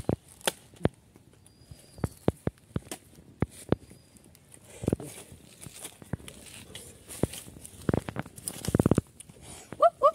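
A knife cutting and chopping a fish on banana leaves laid on the ground, heard as irregular sharp knocks and taps, with a quick run of strokes near the end.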